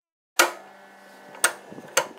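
Silence, then a sharp knock about half a second in, a faint steady hum, and a second sharp knock about a second later.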